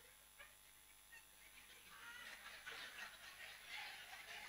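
Near silence, with faint, indistinct voices in the second half.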